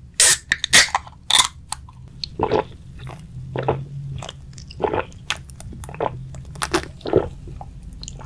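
Aluminium can of non-alcoholic beer opened with a few sharp snaps of the pull-tab, then swallowing sounds about once a second as it is drunk, close to the microphone.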